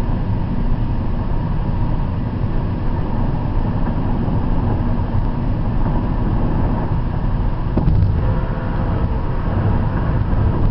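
Steady road noise inside a car cabin at highway speed, the rumble of tyres and engine heaviest in the low range. A brief knock comes about eight seconds in.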